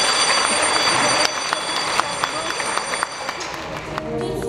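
Electric school bell ringing steadily, a loud metallic rattle with a high ring, cutting off about three and a half seconds in.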